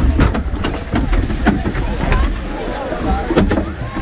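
Hockey arena crowd: many voices talking at once over a steady low rumble, broken by several sharp knocks and clacks at irregular moments.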